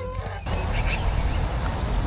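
Chickens calling over a steady rushing, rustling noise that sets in about half a second in.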